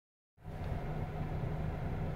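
Steady low hum of a car, heard from inside the cabin, starting just under half a second in.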